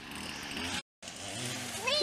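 Steady outdoor background noise with no clear pitch, which cuts out completely for a moment a little before one second in, then resumes. A child's voice starts rising right at the end.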